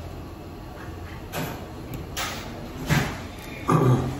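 Crispy bloomer bread being bitten and chewed close up: four short crunches about a second apart, with a brief 'mm' on the last one.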